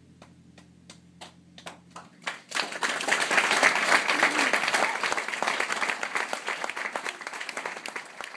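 The last harp chord dies away while a few scattered claps begin; about two and a half seconds in they swell into full audience applause, which slowly tapers off.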